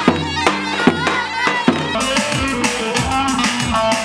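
Davul bass drum and zurna shawm playing a folk dance tune, heavy drum beats about twice a second under a piercing, wavering reed melody. About halfway through, the sound cuts abruptly to other music with held notes and a lighter beat.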